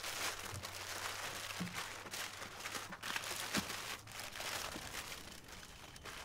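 Soft crinkling and rustling with a few light knocks scattered through, from mangoes and cardboard packing boxes being handled.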